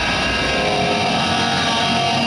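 Heavy metal band playing live: loud distorted electric guitars holding a sustained, ringing chord.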